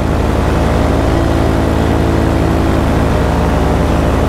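Paramotor engine and propeller running steadily in flight, holding an even pitch with no change in throttle.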